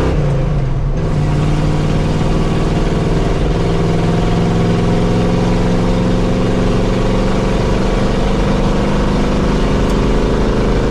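The 1980 Chevy K20's Quadrajet-carbureted engine pulling the truck along at highway speed, heard inside the cab. Its note dips briefly near the start, then climbs steadily as the truck gains speed, with no sign of cutting out. This is a test drive to see whether reversing a backwards-installed fuel filter has cured a fuel cutout at highway speed.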